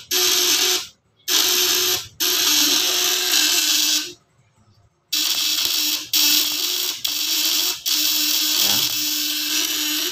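Homemade electric fish shocker's vibrating contact-breaker points (platina) buzzing loudly on 24 V batteries with a hiss over the tone, working heavily under a 1500-watt lamp load. The buzz stops and restarts several times, with a pause of about a second near the middle.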